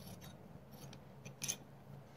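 Scissors snipping through light printed cloth: a few faint cuts, the sharpest about one and a half seconds in.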